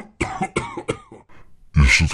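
A person coughing: a quick run of short, sharp coughs that grow weaker, then a louder voice near the end.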